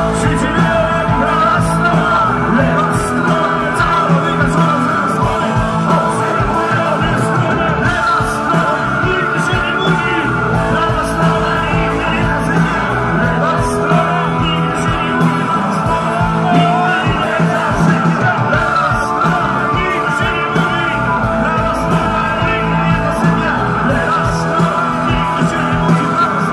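Live rock band playing loud and steady: electric guitars, bass and drums, with a male singer.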